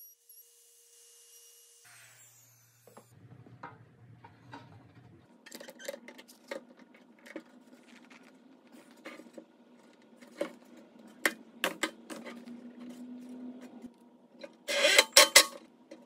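Woodworking handling sounds: scattered small clicks and knocks of wooden flange parts and hand tools, over a faint steady hum, with a louder rough noise lasting about a second near the end.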